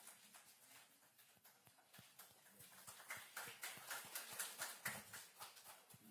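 Faint scattered applause, hand claps from a small group, growing louder about four seconds in.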